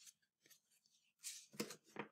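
Pages of a large paperback picture book being turned: a few short, faint papery rustles, the strongest about a second and a half in, over a faint low hum.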